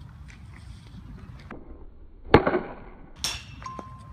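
A softball bat strikes a pitched ball with one sharp crack about halfway through. About a second later comes a quieter rattle with a metallic ring, then a short electronic beep as the swing sensor registers the swing.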